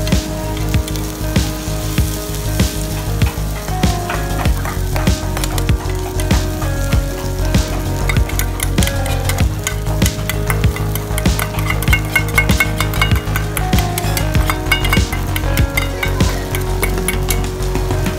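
Okonomiyaki batter and shredded cabbage sizzling on a hot teppan griddle, with many quick clicks and scrapes from a small metal spatula pushing the pile into shape. The clicks come thicker in the second half.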